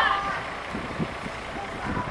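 Street traffic noise with faint, distant voices.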